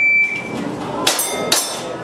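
A shot timer's start beep, one high tone about half a second long, then two airsoft pistol shots about half a second apart, each with the ring of a struck steel target plate.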